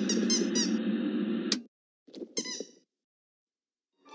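DVD menu transition sound effect: a burst of TV static with squeaky chirps over it, cut off by a click after about a second and a half, then a shorter squeaky burst with falling chirps.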